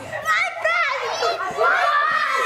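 Several children's high voices shouting and chattering over one another at play.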